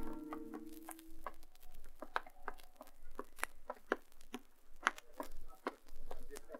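A held musical chord fades out in the first second and a half, then irregular light taps and clicks follow, about two or three a second, over a faint low hum: a radio-drama sound effect.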